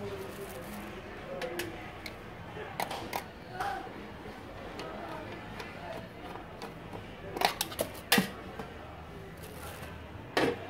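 Handling noise from a digital weighing scale's stainless-steel indicator housing as it is taken apart: scattered clicks and taps, with a cluster of sharper clicks about seven to eight seconds in.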